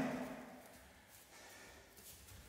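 Quiet room with faint rustling and breathing as two grapplers step together into a clinch on the mats.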